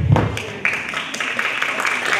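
Audience applauding, a dense patter of many hands clapping that picks up about half a second in.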